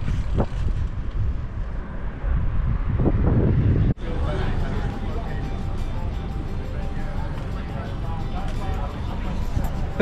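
Wind rushing over the camera microphone and road noise while cycling. About four seconds in it cuts off sharply to street noise with traffic rumble and faint music and voices.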